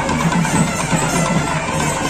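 Loud, steady music with drums and percussion.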